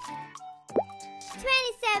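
Light children's background music, with a short plop sound effect a little under a second in, a quick drop in pitch. Near the end a child-like voice says the letter 'T'.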